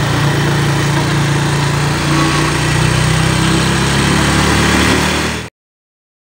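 Motorcycle engine running steadily while riding at low speed. The sound cuts off suddenly about five and a half seconds in.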